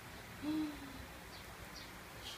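A girl's short wordless vocal sound, a held low tone that falls slightly, about half a second in, reacting to a photo on screen.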